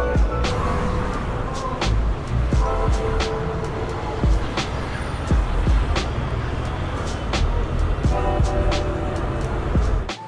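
Background music with a steady beat, deep bass and sustained notes, cutting off at the very end.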